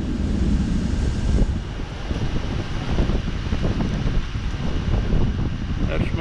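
Wind and rain of an approaching storm, with gusts buffeting the microphone.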